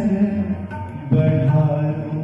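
Male vocalist singing a Nepali ghazal live, with instrumental accompaniment; a long held note starts about a second in.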